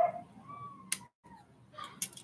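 Plastic model-kit runner being handled, with faint rustling and one sharp plastic click about a second in.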